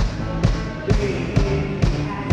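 A live electronic pop band plays through the stage PA: a steady four-on-the-floor kick drum at about two beats a second under held synthesizer and bass notes.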